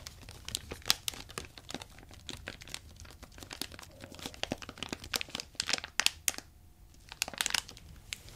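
Plastic Swedish Fish candy bag crinkled and squeezed between the fingers close to the microphone: a dense run of irregular sharp crackles, with a brief lull about six and a half seconds in.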